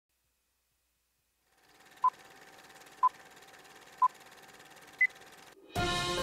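Electronic countdown beeps: three short beeps at one pitch about a second apart, then a fourth, higher beep, over a faint hiss. Intro music starts right after the last beep, near the end.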